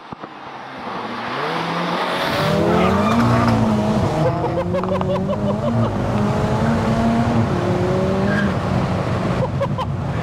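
A big-turbo, 515 bhp MK5 Golf GTI's turbocharged 2.0-litre four-cylinder accelerating hard, getting louder over the first few seconds. The revs climb, drop back and climb again as the DSG gearbox shifts up.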